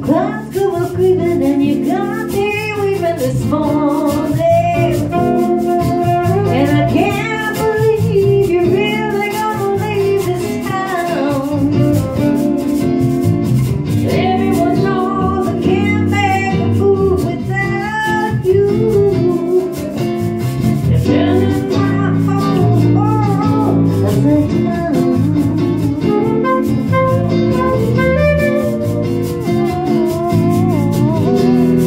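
A live band playing: women singing over electric and acoustic guitars, with a saxophone in the band.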